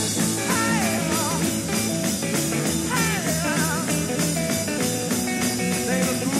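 Psychedelic blues-rock played by a band: a steady drum beat and bass under a lead guitar whose notes bend and waver with vibrato.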